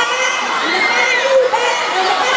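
A crowd of young teenage students shouting and cheering on relay runners, many high voices overlapping with no break.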